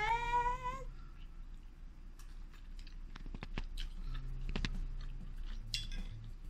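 A short voiced squeal that rises in pitch at the start, then chewing, with a few sharp clicks of a metal fork on a plate.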